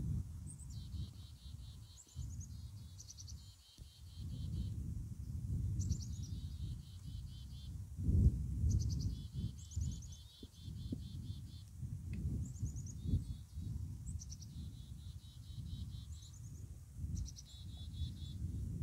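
A songbird singing the same phrase over and over, a run of falling notes ending in a rapid trill every two to three seconds. An uneven low rumble, louder than the song, runs beneath it, typical of wind buffeting an outdoor microphone.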